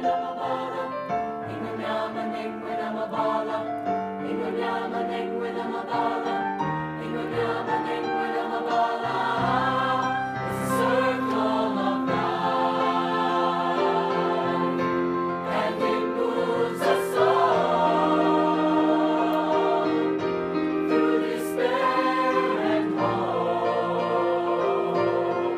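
Mixed high-school choir, girls' and boys' voices, singing a song in parts, with held chords that grow louder about a third of the way in.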